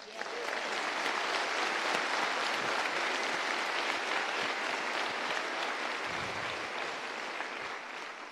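Large audience applauding, a dense, sustained clapping that eases slightly toward the end.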